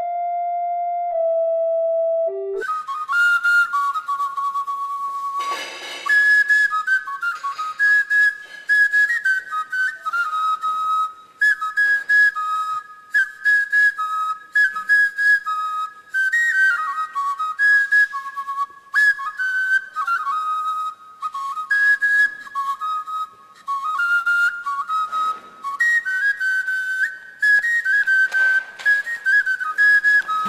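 Background film music: a held keyboard note, then a high, whistle-like melody of single notes that step up and down, over short ticks.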